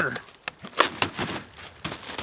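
A clear plastic bag being handled, rustling and crinkling in a few sharp, irregular crackles.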